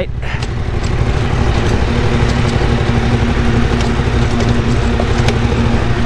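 Suzuki V-Strom 1050's V-twin engine running steadily at low revs as the motorcycle rolls down a steep dirt track, over a steady haze of tyre and gravel noise with a few faint ticks.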